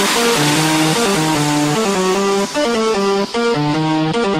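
Tek-style electronic dance track in a breakdown: the kick and deep bass drop out and a plucked-sounding lead melody plays stepped notes on its own. A hissing noise sweep fades out over the first second or so.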